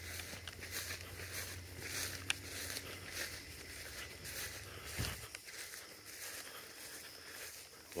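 Footsteps swishing through wet, tall field grass, faint, with a single low thump about five seconds in.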